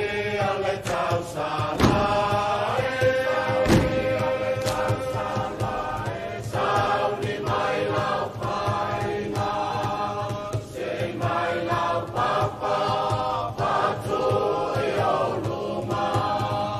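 A group of voices singing a chant-like Samoan song in unison over a steady beat, with two louder sharp hits about two and four seconds in.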